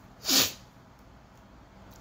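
A man's single short, sharp sneeze.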